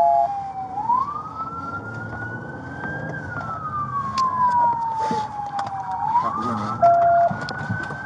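An emergency-vehicle siren on a slow wail, heard from inside a car: its tone rises, holds high, then falls slowly, one full cycle about every five seconds. Two short steady beeps sound, one at the start and one about seven seconds in.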